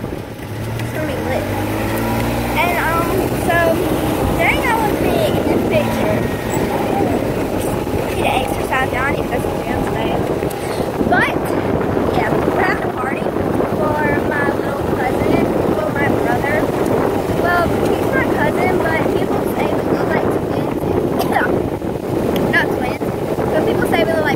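Golf cart driving along with a steady running noise. A hum rises in pitch in the first few seconds as it gets going, then holds steady.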